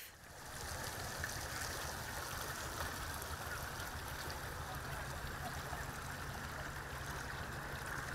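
Muddy water rushing steadily down an urban drainage channel.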